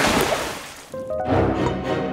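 A splash of water through a hole in the ice, fading away over about a second, followed by background music with held notes.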